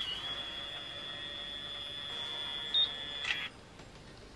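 BaByliss automatic hair curler giving one long, steady, high-pitched beep with its hair strand wound inside, the signal that the curl is done. The beep cuts off about three and a half seconds in, with a short click just before.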